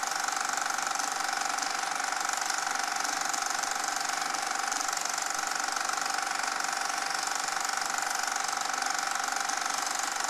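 Film projector running: a steady, fast mechanical clatter and whir that does not change.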